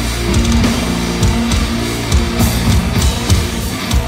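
Live heavy metal band playing: distorted electric guitar and bass holding low notes under a drum kit with regular hits.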